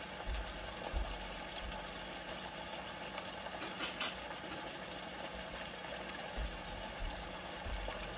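Pork chops searing in olive oil in a stainless steel pan, a steady sizzle with a few faint ticks and soft low thumps.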